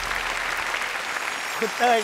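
Studio audience applauding, a steady dense patter of clapping; a man's voice comes in near the end.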